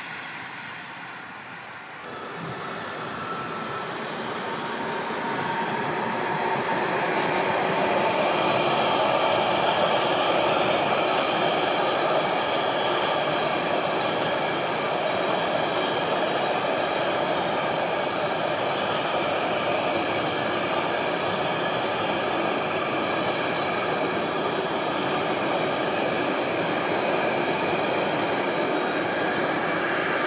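Intermodal freight train hauled by a Class 185 Bombardier Traxx electric locomotive passing close by: the steady rolling noise of container and tank-container wagons on the rails, building over the first few seconds and then holding, with a few steady ringing tones over it.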